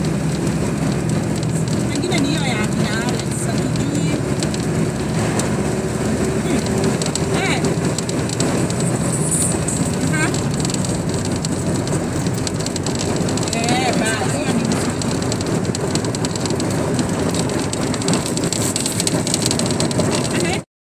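A vehicle driving on a dirt road: steady engine and road noise, with a few short high chirps over it.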